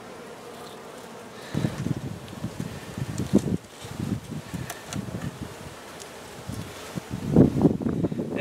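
Honey bees buzzing over an open hive, a steady hum. From about a second and a half in, irregular low bumps and scrapes as a hive tool pries the wooden frames loose and the next frame is handled, loudest near the end.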